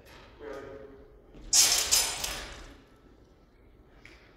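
Langes messer blades clashing and scraping in a quick fencing exchange: two hits about half a second apart, each with a bright ringing smear, echoing in a large gym hall.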